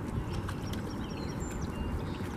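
Small birds chirping and whistling in the background, short scattered notes with a couple of brief held whistles, over a steady low rumble on the microphone.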